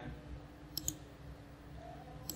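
Two quick computer mouse clicks a little under a second in, selecting the grid overlay from a menu.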